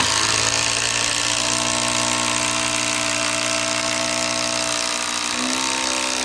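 Makita 40V XGT cordless impact driver hammering continuously as it drives a long, roughly 12-inch screw into a wood round under heavy load, its tone shifting slightly near the end as the screw goes deep.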